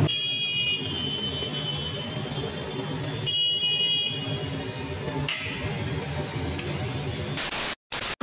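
A steady high-pitched whine over low background bustle, then a short burst of TV-style static near the end that cuts out abruptly.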